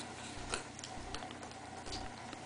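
A baby sucking on an ice pop: a few soft, irregular mouth clicks, the clearest about half a second in.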